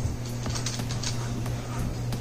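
A few light plastic clicks and taps as a Hot Wheels car is set into the plastic track launcher, over a steady low hum.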